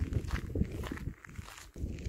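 Footsteps on a gravel dirt track at a steady walking pace, with a brief lull a little past halfway.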